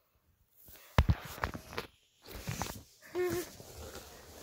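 Phone microphone being handled and brushed against clothing: a sharp knock about a second in, then rustling and bumps, and a short low pitched tone a little after three seconds.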